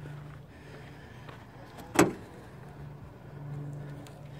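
A Honda Accord sedan's trunk lid being shut once about halfway through, a single sharp thud over a faint steady low hum.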